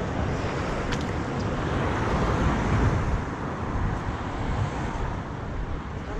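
Wind rushing over an action camera's microphone and mountain bike tyres rolling on asphalt, swelling about two to three seconds in, with a few faint clicks.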